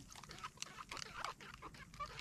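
Faint, irregular small splashes and clicks of water against a small outrigger boat.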